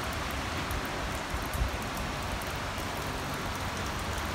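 Steady, even hiss of background noise with a low rumble underneath and no distinct events.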